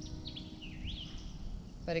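A bird calling faintly: a few short whistled notes in the first second, one a quick rising-and-falling glide, over a low steady background rumble.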